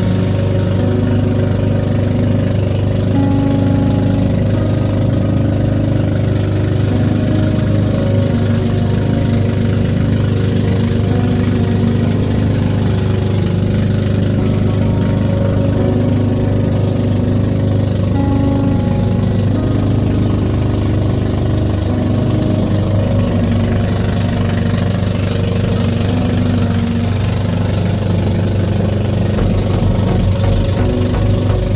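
Outrigger boat's engine running steadily while underway, a constant low drone. Background music plays over it.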